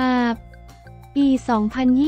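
Speech with background music: a voice reading narration, with one drawn-out syllable at the start and another near the end, a short pause between them, and quiet steady music underneath.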